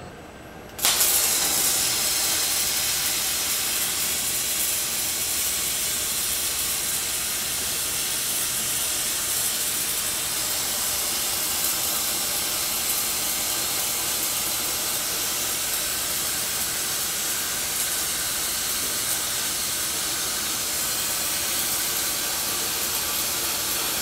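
MIG welding arc on a robotic welder running .045 in 70C-6LS metal-core wire at about 262 A and 26.2 V with a 25° pull (drag) angle: a steady, even hiss that starts abruptly about a second in.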